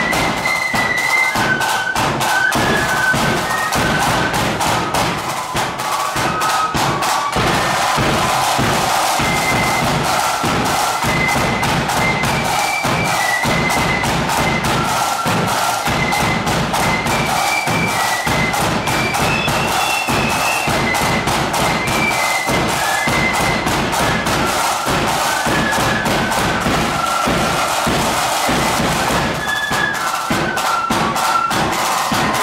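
A flute band playing a tune: many flutes carry the melody in unison over rapid, unbroken snare drum strokes and the thud of a bass drum.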